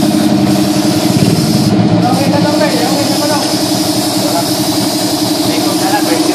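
Air compressor running steadily with a fast, even pulse, supplying air to a paint spray gun.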